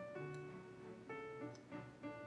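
Soft background music: held keyboard-like notes, with the chord changing about a second in.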